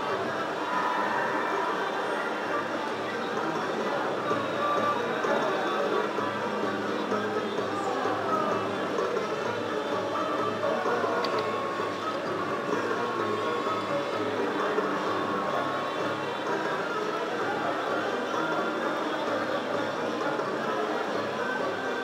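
Aristocrat Double Happiness slot machine playing its free-games bonus: electronic music and jingles as the reels spin and wins tally up, steady and continuous, over the hubbub of a casino floor.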